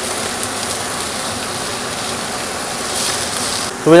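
Oxtail pieces searing in a very hot, smoking frying pan: a steady sizzle that holds even until it dips just before the end.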